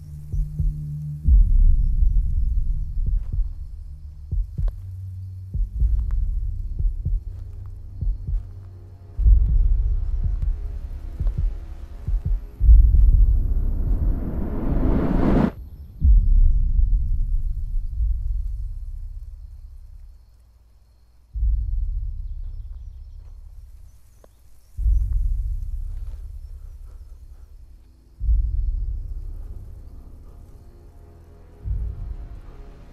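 Tense film score: deep bass pulses about every three and a half seconds, each starting suddenly and fading away. Midway a swell rises in pitch and loudness and then cuts off abruptly.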